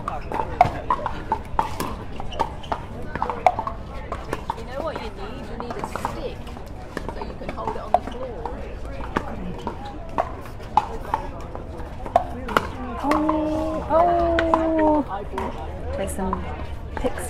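Pickleball rally: sharp, irregular pops of paddles striking a plastic pickleball over background crowd chatter. Near the end a voice calls out twice in long, drawn-out tones.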